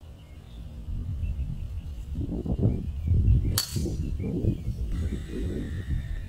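A golf club striking a teed-up ball: one sharp, crisp click about three and a half seconds in, over a steady low rumble.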